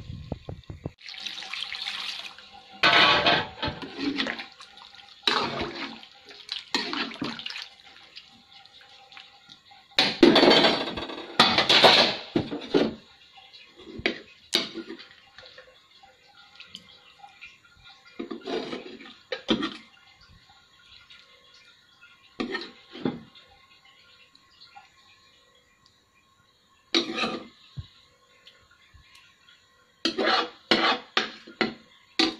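Water poured and splashing into a cooking pot of cauliflower and tomato in several irregular bursts. The loudest pour comes about ten seconds in, and the bursts grow shorter and sparser toward the end.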